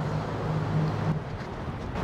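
Street traffic noise with a low, steady engine hum from a vehicle close by, the hum easing off about halfway through.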